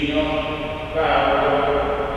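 A man's voice chanting a liturgical prayer, holding each recited note steady.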